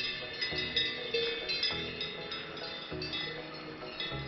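Background music with a low, changing bass line, over which cowbells clank irregularly with bright, ringing metallic strikes.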